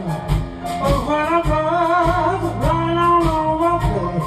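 A small blues band playing live: electric guitar, bass guitar, drum kit and keyboard, with singing in long held, wavering notes over a steady beat.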